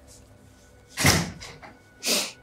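A short door sound about a second in, likely a bedroom door being opened, over faint background music.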